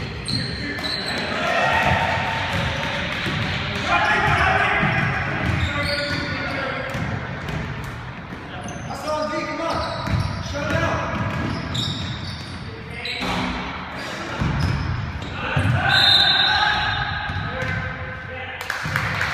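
A basketball bouncing on a hardwood gym floor during play, with voices calling out over the game at several points, in a gymnasium.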